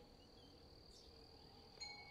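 Near silence with a faint, steady, high-pitched insect trill. Near the end, one soft struck note starts ringing on like a chime.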